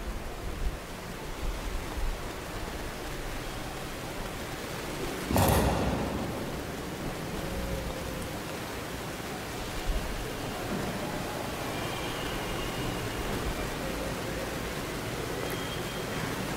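Steady hiss of background noise on an open microphone, with one brief loud rustle or thump about five seconds in.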